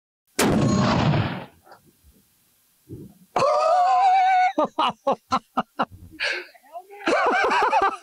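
.50 BMG rifle firing a single shot about half a second in, the blast dying away over about a second. About three seconds later a man's voice rises into laughter.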